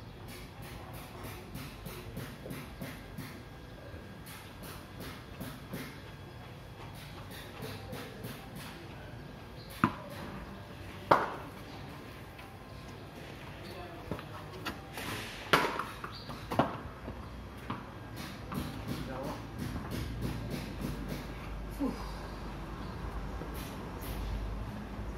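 Cricket ball knocks on a paved practice pitch: four sharp, isolated impacts, two close together about ten seconds in and two more about five seconds later.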